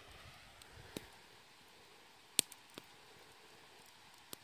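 Quiet background with a few short sharp clicks: a faint one about a second in, the loudest about two and a half seconds in, then two fainter ones.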